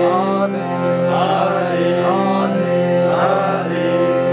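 Devotional song: a BINA harmonium holds sustained chords under a man singing a wavering, ornamented melody, with tabla accompaniment.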